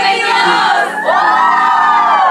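A group of young women shouting and cheering together; about a second in, their voices join in one long whoop that rises and then falls.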